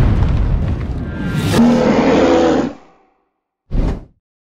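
Logo animation sound effects with music: a deep, low-heavy hit that runs on for about a second and a half, a short rush of noise, then a pitched musical chord that fades out about three seconds in. After a brief silence a short, loud hit starts near the end.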